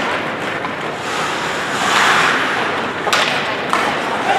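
Ice hockey skates scraping and carving on the ice, swelling to a longer scrape about halfway through, with two sharp clacks near the end.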